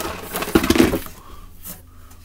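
Plastic blister-packed die-cast toy cars clattering and crinkling as they are rummaged through and pulled out of a cardboard case. It is busiest and loudest in the first second, then thins to a few scattered clicks.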